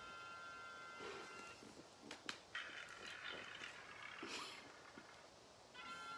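Faint held electronic tone, several steady pitches at once, from the tablet's spin-the-wheel picker app during roughly the first second and a half, returning just before the end. In between there are a couple of soft clicks and faint rustling.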